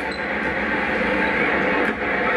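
Steady background sound of a basketball game broadcast playing through a television's speaker, recorded off the set.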